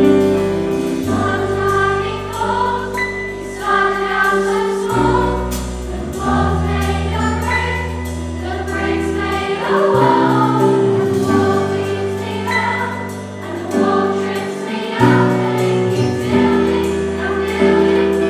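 Massed children's choir singing in unison with live band accompaniment, long held bass notes underneath the voices.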